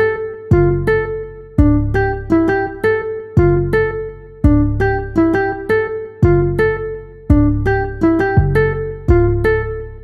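Hip-hop instrumental beat: a plucked, guitar-like melody over deep bass hits that come about once a second and fade slowly. The high hi-hat patter drops out for this stretch.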